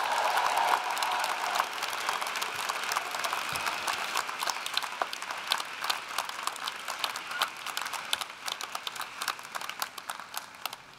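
Audience applause with some cheering voices in the first second or so, then clapping that gradually thins out and quiets.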